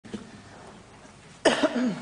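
A person coughs once, about one and a half seconds in, followed by a short "mm" that falls in pitch. Before it there is only faint room tone.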